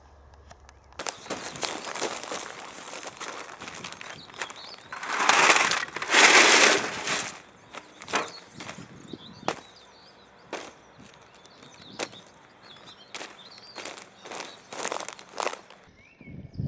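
A wheelbarrow load of stones and garden debris tipped out onto a plastic sheet: a rough rattling crunch, loudest for a couple of seconds near the middle, then scattered knocks and clicks as the pieces settle and are moved about.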